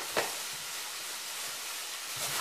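Chicken frying in a pan, giving a steady sizzling hiss, with a single short click about a quarter of a second in.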